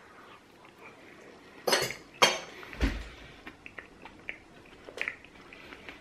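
A metal fork clinking and scraping on a small bowl during eating. There are two loud scrapes just under two seconds in, a dull knock right after, and faint light clicks before and after.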